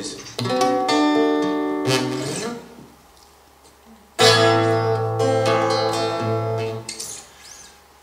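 Acoustic guitar strummed and let ring: chords near the start that fade out, a pause of about a second and a half, then a loud chord a little past the middle that rings on and dies away. It is the introduction to a song, before the singing comes in.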